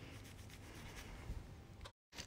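Faint handling sounds of a gloved hand and a small plastic cup as resin is poured onto a board: soft rubbing with a few light ticks and one small knock a little past midway. The sound cuts off abruptly near the end.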